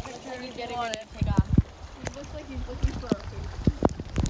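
Indistinct voices talking, broken by several sharp knocks, over a low rumble.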